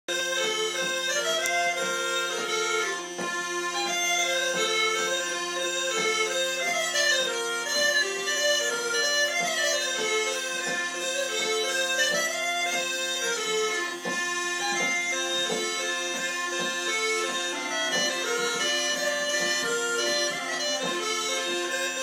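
Three sets of Northumbrian smallpipes playing a lively tune together: a quick, crisply separated chanter melody over steady drones that hold one chord throughout.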